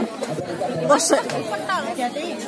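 Chatter of several overlapping voices, children and women talking.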